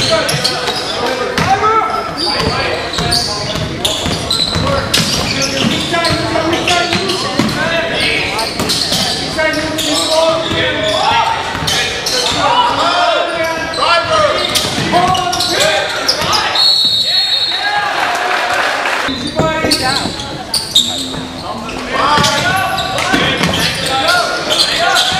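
Basketball being dribbled on a hardwood gym floor, the bounces echoing in the hall, under the voices of players and spectators. A brief high-pitched squeal comes about two-thirds through.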